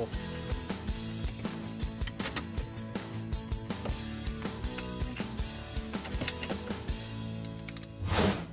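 Background instrumental music with steady held tones and many short, sharp clicks.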